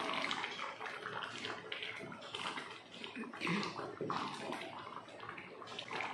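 A wooden spoon stirring a pot of simmering green peas gravy: irregular wet sloshing and bubbling.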